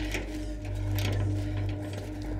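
Metal gate latch rattling and clicking in quick, uneven strokes as it is worked by hand and does not give, over a low steady rumble.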